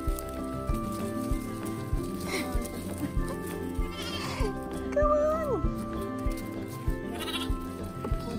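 Orphaned lambs bleating for their bottle feed over background music: several short calls, the loudest and longest about five seconds in, dropping in pitch at its end.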